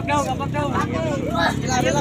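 Voices of people talking over background crowd chatter, with a steady low hum underneath.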